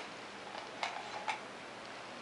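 A few faint taps of toy spoons against a small plastic cup as a toddler stirs: three light clicks within about a second, over quiet room tone.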